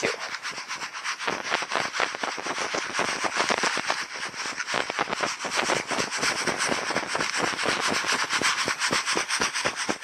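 Dry gravel and sand rattling and scraping inside a plastic gold pan as it is shaken for dry-panning, a fast, even run of several strokes a second.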